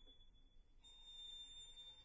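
A very high violin note held softly through the whole stretch, heard as a faint, thin, almost pure tone in a near-silent passage.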